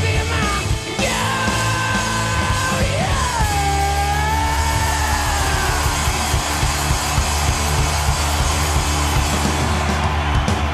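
Garage-rock band playing live, with drums and electric guitar. The singer holds one long yelled note from about a second in; it drops in pitch about three seconds in and fades out around six seconds, and the band plays on.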